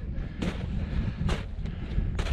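Wind buffeting the microphone with a low rumble, and three footsteps in soft snow, about one a second, while breaking trail uphill.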